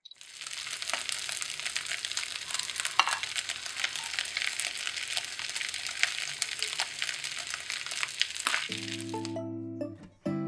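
Fried rice sizzling and crackling in a hot frying pan, a steady hiss with many small pops. It stops about nine seconds in, and plucked-string music starts just before that.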